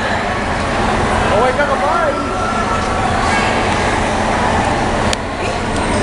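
People calling out, with a couple of rising-and-falling cries about a second and a half and two seconds in, over the steady noise of a van's engine as it drives slowly past. A single sharp click comes about five seconds in.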